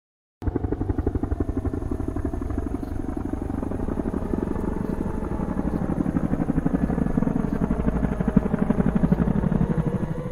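A rapid, steady, low chopping pulse like a helicopter's rotor. It cuts in suddenly just after the start and swells slowly louder throughout.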